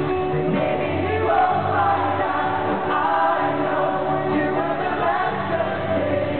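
Acoustic guitars strummed with a lead vocal, and a large crowd singing along.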